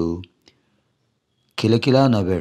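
A man's voice lecturing in Telugu breaks off for about a second of near silence, with a faint click in the pause, then resumes.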